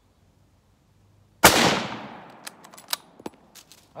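A single rifle shot from a Rock Island Arsenal M1903 bolt-action rifle in .30-06, about a second and a half in, very loud and echoing away over about a second. A few light clicks follow.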